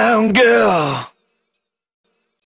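A singer's voice holding the last note of a song, sliding down in pitch, then cut off abruptly about a second in, leaving silence.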